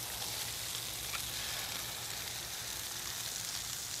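Eggs, bacon and burgers frying on a Blackstone gas flat-top griddle: a steady sizzling hiss.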